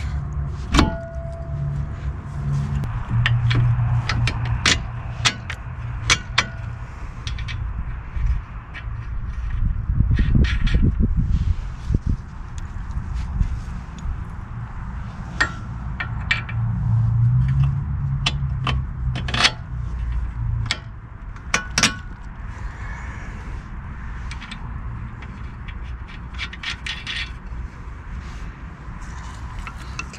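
Scattered metallic clicks and clinks of a front brake caliper, its bracket and hand tools being handled and fitted at a car's wheel hub, over a low rumble that swells now and then.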